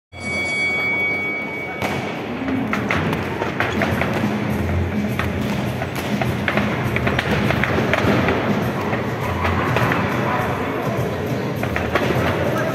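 Amateur boxing bout in a sports hall: thumps of gloves and feet in the ring over voices and background music. A steady high tone sounds for the first two seconds and ends with a sharp knock.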